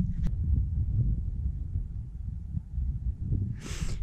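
Wind buffeting the camera microphone as a steady low rumble. Near the end comes a short breathy exhale as the runner starts to laugh.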